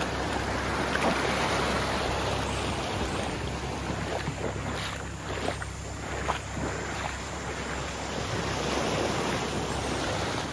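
Small waves washing up the sand and around rocks at the water's edge: a steady rush of surf that swells and eases, with a few short crackles in the middle.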